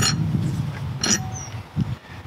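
Metal air cleaner being lifted off a V8's intake: a sharp clink about a second in, over a steady low rumble.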